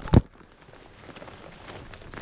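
A single thump of a handheld action camera being set down, picked up by its own microphone, followed by faint rustling and a few light clicks of handling.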